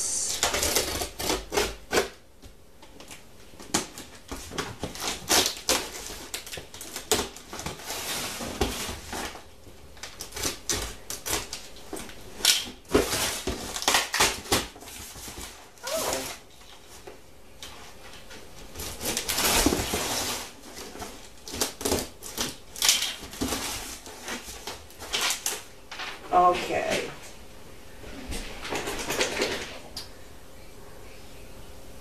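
A cardboard shipping box being opened by hand: packing tape ripped off and the flaps and paper inside rustling and crinkling, in repeated irregular bursts.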